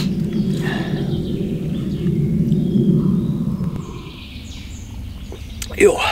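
A steady low rumble that dies away about four seconds in, leaving a quieter woodland background with a few faint bird calls.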